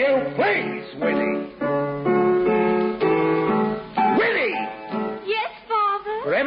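Music: a voice singing held notes with swooping slides, over a piano.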